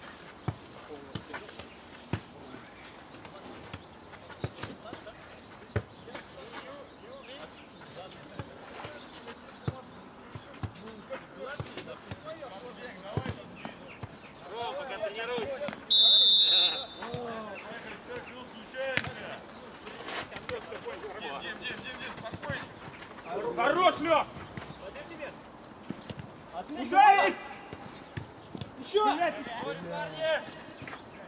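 A referee's whistle blown once, a short shrill blast about halfway through, signalling the kick-off. Around it come repeated thuds of a football being kicked and players shouting on the pitch.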